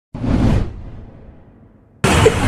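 Whoosh sound effect for a breaking-news title graphic: it starts suddenly, is loud for about half a second, then dies away.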